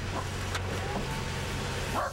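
A vehicle engine idling with a steady low hum, and a single brief click about half a second in.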